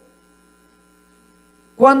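Faint, steady electrical hum made of several steady tones, the kind of mains hum a microphone and sound system pick up. Near the end a man's voice cuts in, speaking into the microphone.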